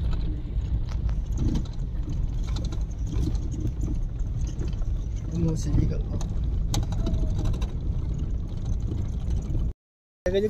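Cabin noise in a moving vehicle on a rough dirt road: a steady low rumble of engine and tyres with small rattles and clicks throughout. The sound cuts out briefly near the end.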